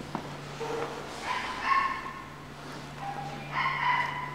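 High-pitched whining cries, a loud one about a second and a half in and another near the end, with fainter lower cries before each, over a steady low hum.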